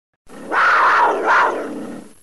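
An animal roar sound effect that starts a moment in, swells twice and then fades away.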